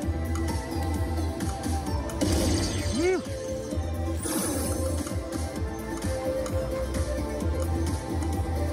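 Slot machine bonus-feature music and sound effects while the reels spin in the fireball hold-and-spin round, over a pulsing bass. There is a short swooping tone about three seconds in and bright swishes either side of it, with casino chatter underneath.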